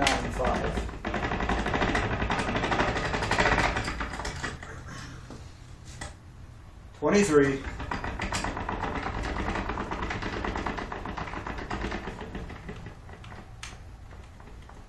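Ratchet on a bow tillering tree clicking rapidly in two long runs, the second one winding the string back to draw on a heavy horn-and-sinew Turkish bow.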